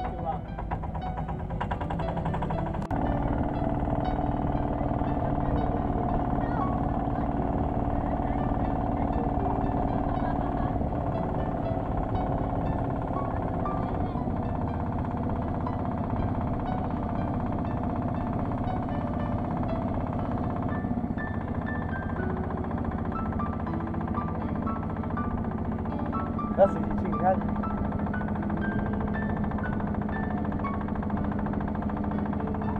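Long-tail boat engine running steadily at cruising speed, a fast even pulsing, under background music. Two brief sharp knocks near the end.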